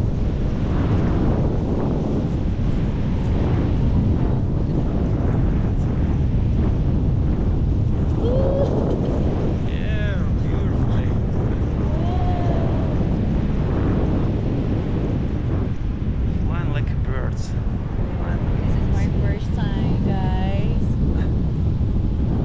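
Steady airflow buffeting the camera microphone during a tandem paraglider flight, loud and unbroken. Faint voices come through the wind now and then in the second half.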